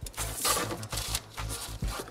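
X-Acto knife and steel ruler working on wax paper over a cutting mat: scratchy cutting and rustling of the wax paper, with several sharp clicks.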